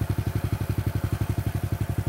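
An engine idling with an even pulse, about fourteen beats a second.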